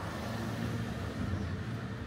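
Street ambience with a steady low engine hum.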